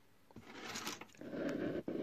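Handling noise from the camera being moved: rubbing and rustling with a few light knocks, starting about a third of a second in.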